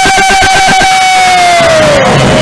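Patrol music ensemble of bamboo percussion and drum playing fast, even strokes under one long held shouted vocal note that slides down in pitch near the end.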